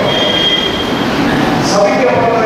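A man's voice preaching through a microphone and loudspeakers in a reverberant hall, with a thin steady high tone for about the first second.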